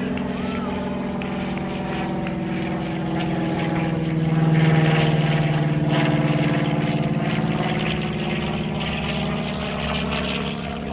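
Propeller aircraft engine drone passing overhead, a steady hum of several stacked tones that swells to its loudest about halfway through and then slowly eases.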